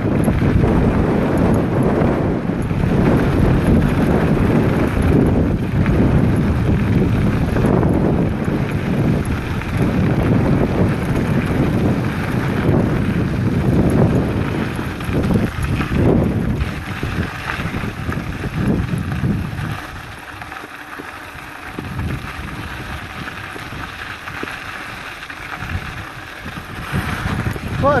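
Wind buffeting a phone microphone mounted on a mountain bike's handlebars, mixed with the rolling rumble of knobby tyres on a gravel trail during a downhill ride. The noise drops to a lower, calmer level about two-thirds of the way through, as if the bike slows.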